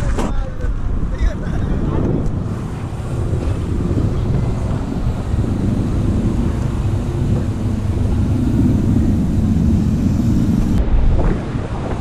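Wind buffeting the microphone of a camera carried on a moving bicycle: a loud, steady low rumble from riding at speed, with a few short clicks near the start.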